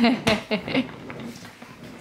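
A woman's voice ends right at the start, followed by a few short, faint voice sounds in the first second, then quiet room noise.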